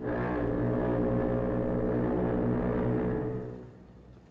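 Ship's foghorn sounding one long, low, steady blast that starts abruptly and fades out near the end.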